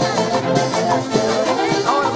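Live folk band of harp, violin and trumpet playing a steady dance tune, with a regular beat.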